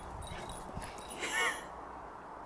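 A tiny French bulldog puppy gives one short, high, wavering yelp in play with a bullmastiff, about a second and a quarter in.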